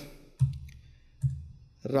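Two laptop keyboard keystrokes about a second apart, the first louder: the Enter key pressed to open blank lines in the code editor.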